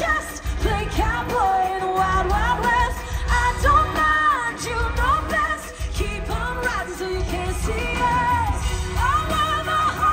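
A female lead singer singing live into a handheld microphone, holding and sliding through wordless notes, over full pop-band backing.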